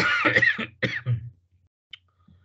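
A person clearing their throat: one loud rasp followed by two shorter ones, over in about a second and a half.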